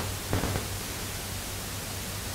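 Steady hiss with a faint low hum: the background noise of the microphone and recording chain, with no voice over it.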